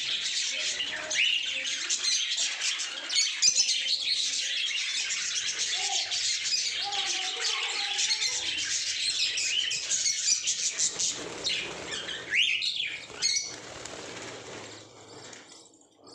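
A flock of budgerigars chattering and chirping continuously, with occasional sharper squawks; the chatter thins out near the end.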